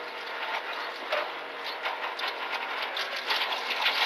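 Renault Clio Rally4 rally car running at speed, its engine and drivetrain heard from inside the cabin as a steady mechanical noise with a few short knocks.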